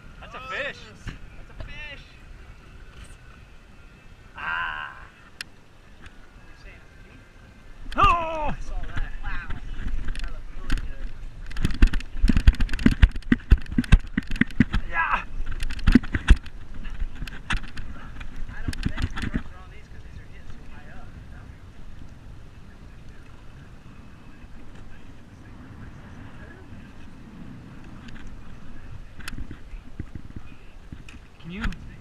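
A few short shouted exclamations, then a dense run of irregular knocks and thumps for about ten seconds, loudest in the middle, before it settles to a low background.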